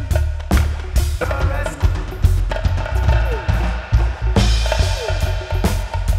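Live band playing an instrumental passage: an acoustic drum kit hit busily on kick and snare over a heavy, deep bass line. A few short gliding tones slide through the mix.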